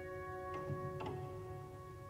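Slow, soft piano music: held notes dying away, with two quiet notes struck about half a second and a second in.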